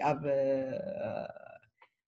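A woman's voice holding one drawn-out, wordless syllable for about a second and a half, fading out into a short pause.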